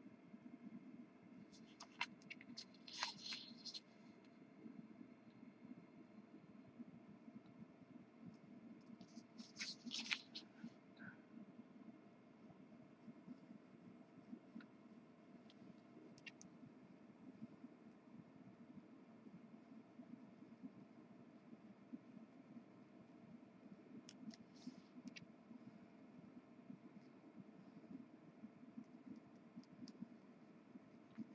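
Near silence with a low steady room hum, broken by a few brief, faint scratchy strokes of a felt-tip marker on the printed sheet, the loudest about three and ten seconds in.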